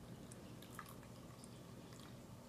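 Very faint trickle of warm milk being poured from a glass measuring cup into a glass mug of tea, with a couple of tiny drip-like ticks.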